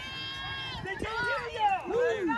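Several voices shouting and cheering as a youth football team is hyped up before running out. One long held yell gives way to short, overlapping rising-and-falling shouts that grow louder near the end.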